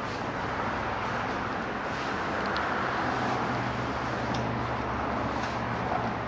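Street traffic: passing cars, a steady rush of tyre and engine noise that swells slightly in the middle, with a low engine hum underneath.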